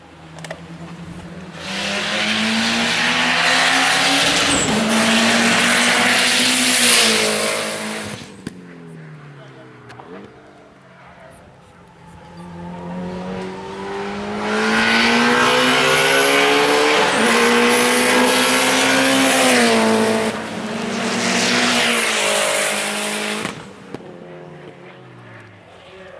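Cars being driven hard around a race circuit, engines revving up and easing off in pitch as they pass, with loud tyre squeal in two long stretches.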